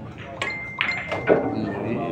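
A pool shot: the cue tip clicks against the cue ball, followed within a second by several sharp clicks of billiard balls striking each other.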